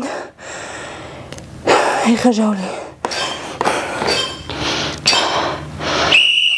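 A woman breathing hard through dumbbell reps, a string of forceful exhales each about a second long, with a short voiced grunt about two seconds in.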